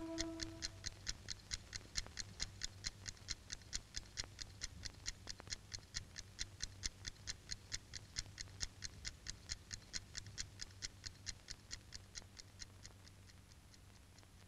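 Mechanical twin-bell alarm clock ticking steadily, about five ticks a second, fading gradually and stopping near the end.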